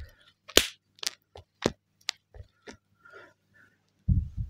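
A broken folding flip phone handled right up against the microphone: a string of sharp, irregular clicks and ticks over about three seconds, then faint rustling. The clicks are offered as a sign that something has come loose inside the phone.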